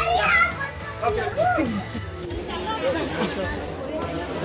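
Several voices talking, some of them high-pitched, over background music.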